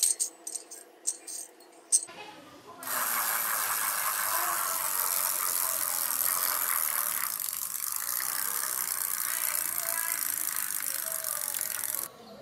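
A few sharp metal clicks and knocks as a steel sprocket is fitted onto a small wheel hub. After a couple of seconds a steady rattling whir takes over: a small pneumatic wheel spinning freely on its ball-bearing hub.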